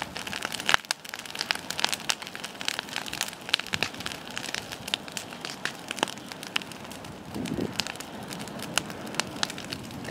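Open bonfire of dry grass and brushwood burning, with many sharp crackles and pops over a steady hiss.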